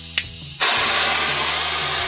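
Handheld gas blowtorch: a sharp click, then about half a second later the flame comes on with a steady, loud hiss.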